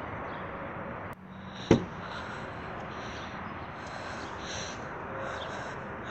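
Steady outdoor background noise with a single sharp knock a little under two seconds in.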